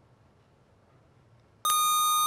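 Quiet room tone, then about one and a half seconds in a quiz-bowl lockout buzzer sounds a steady electronic beep as a contestant buzzes in.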